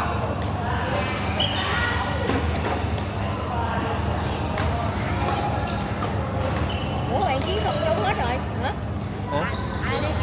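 Badminton rally: a shuttlecock hit back and forth with sharp, repeated racket strikes, with sneakers squeaking on the court floor and voices in the hall.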